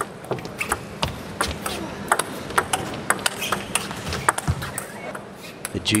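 Table tennis rally: the ball clicking sharply off the rackets and the table in quick, irregular alternation, a dozen or more hits.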